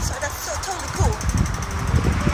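A woman talking over the low, steady rumble of city street traffic.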